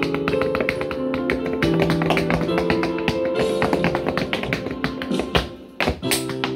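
Percussive dance footwork: hard-soled shoes striking the floor in rapid taps over accompanying music with held notes. A heavy stomp comes a little over five seconds in, followed by a brief lull.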